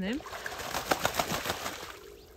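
Muscovy drake bathing in a pond, dipping and thrashing so that water splashes in a quick, irregular run of splashes that dies away near the end.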